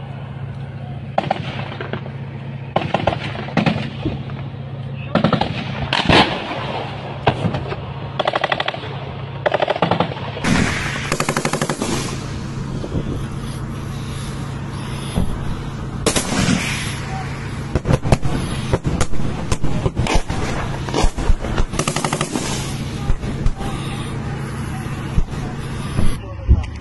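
Gunfire in a firefight: bursts of automatic fire and scattered single shots, some close and some distant. About ten seconds in, the fire becomes busier, with long rapid runs of shots.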